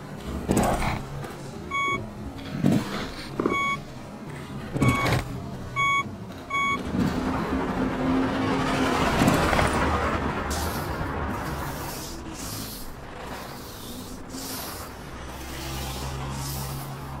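Electronic soundtrack. In the first half, several thuds alternate with short high beeps, each a single pitch. Then a rush of noise swells, peaks past the middle, and thins into a low steady hum.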